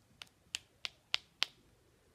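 Five short, sharp clicks, about three a second, the first one faint: an Eisenhower dollar coin held inside a silk cloth being tapped so that it can be heard in the cloth.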